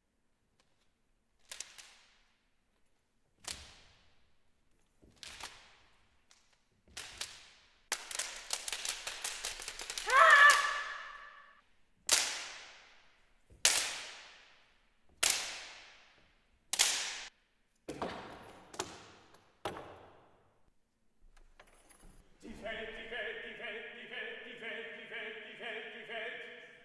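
Sharp whip-like cracks from long flexible rods handled by performers, about one every one and a half to two seconds, each with a bright ring that slides down in pitch. About eight seconds in, a dense rattle of clicks builds into the loudest crack, which rings with a pitched tone. Near the end a man's voice starts a sustained, pulsing sung tone.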